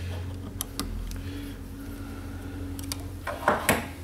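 A few light clicks and taps of metal parts being handled on a bench-mounted wire stripper and its blade holder, over a steady low hum.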